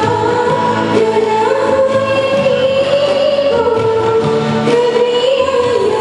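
A woman singing an old Hindi film song live into a microphone, in long held notes that step up and down in pitch, over instrumental accompaniment.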